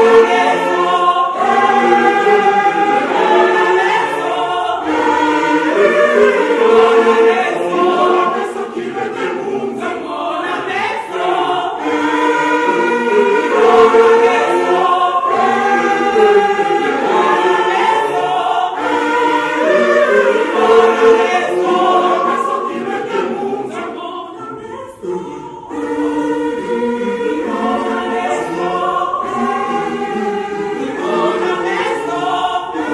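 A large mixed church choir of women and men singing a hymn together in several voices, in sustained phrases. The singing drops away briefly near the end before the choir comes back in.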